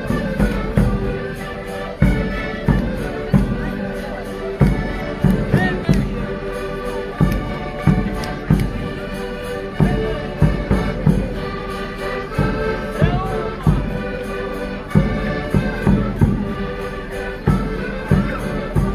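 Portuguese chula dance music played on concertinas (diatonic button accordions), chords and melody over a steady strong beat about one and a half times a second.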